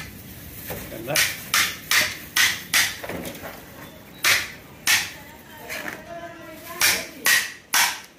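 A hammer strikes the back of a long knife to drive it through a whole fish on a wooden chopping block, cutting it into steaks. The sharp knocks come in runs: five at about two and a half a second, then two, then three near the end.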